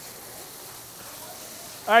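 Ground beef sizzling steadily in a skillet on an induction cooktop as it browns.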